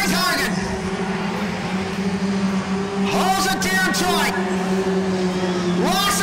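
Junior sedan race car engines running on a dirt speedway: a steady engine drone throughout, with engines revving up sharply at the start and again about three seconds in as the cars accelerate.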